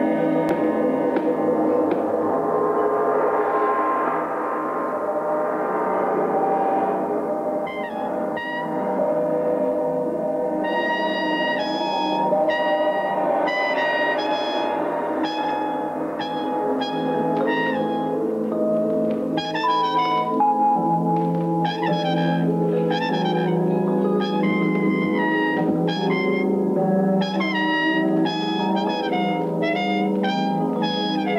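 Big band jazz: a held brass-and-ensemble chord swells. About eight seconds in, a trumpet begins a line of short, separate notes over the sustained chords.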